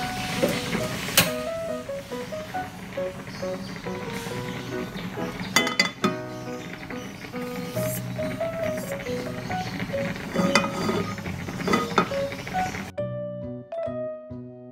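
Background music with a light stepping melody, over room noise with a few sharp metallic clinks from a frying pan being set on a gas stove's pan supports. The room noise cuts off suddenly near the end, leaving only the music.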